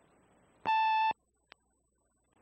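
A single electronic beep from a played-back answering machine cassette, one steady tone about half a second long over faint tape hiss. The hiss cuts out after the beep and a faint click follows.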